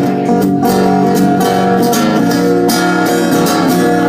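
Acoustic guitar strummed steadily, chords ringing, with no singing over it.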